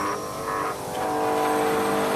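A steady mechanical whine made of several layered tones, dipping and shifting pitch about half a second in, then holding steady.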